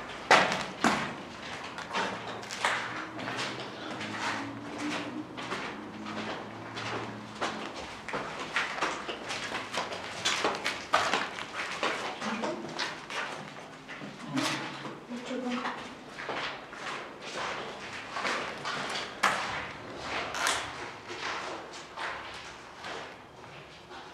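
Footsteps on a gritty, debris-strewn floor in a brick tunnel, irregular, about one or two a second, with indistinct voices in the background.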